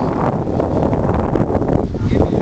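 Wind buffeting the camera's microphone: a loud, steady rumble.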